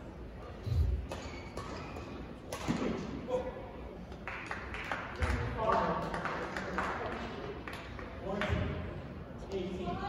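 Badminton doubles rally in a large hall: sharp racket strikes on the shuttlecock at irregular intervals, with court-shoe squeaks and a few heavy footfalls from lunges.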